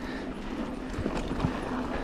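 Canyon Spectral mountain bike rolling along a dirt singletrack strewn with dry leaves: tyre noise over dirt and leaves with a steady hum, and a couple of knocks from the bike over bumps about halfway through.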